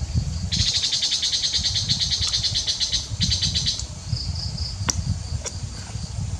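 Insects calling in the woodland: a loud, rapid, high-pitched trill starts about half a second in, breaks briefly and stops before the four-second mark, over a softer steady pulsing call. Two sharp clicks come near the end.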